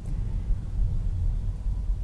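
Low, steady road rumble heard inside the cabin of a 2019 Tesla Model 3 electric car driving slowly.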